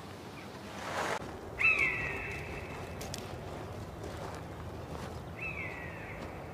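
Two long, high bird calls, each falling slightly in pitch: one about one and a half seconds in and a shorter one near the end, over a steady outdoor background. A brief rush of noise comes about a second in.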